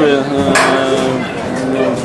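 A man's voice: a short bit of speech, then a long, flat hesitation sound ('eee') held for over a second.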